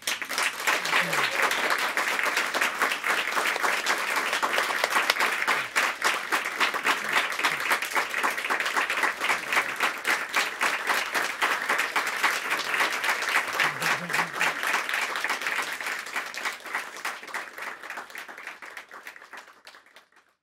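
An audience applauding steadily, the clapping thinning out and fading away over the last few seconds.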